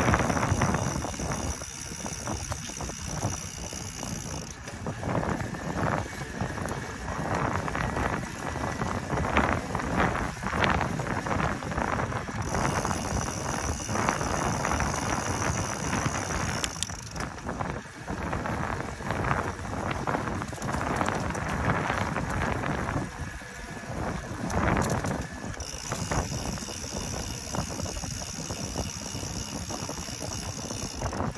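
Ride on a Specialized Turbo Vado electric bike: tyre noise on concrete mixed with wind buffeting the microphone, throughout. A faint, high, steady whine comes and goes a few times.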